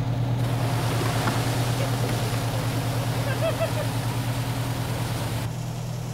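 Fire engine's engine running steadily, a low hum under a loud rushing hiss; the hiss falls away near the end while the engine keeps running.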